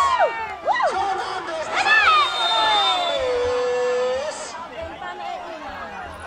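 Football spectators shouting and yelling, with long drawn-out calls. The loudest shouts come at the start and about two seconds in, and a held call follows before the noise settles into lower crowd chatter.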